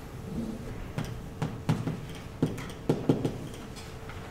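Chalk tapping and scraping on a blackboard as a line is written: a string of irregular sharp taps.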